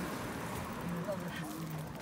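Indistinct talking voices of people in a walking group.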